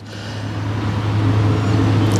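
A vehicle driving past, its engine hum and road noise growing steadily louder.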